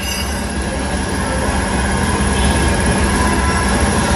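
Steady mechanical rumble of machinery running, loud and unbroken, with a steady low hum in it.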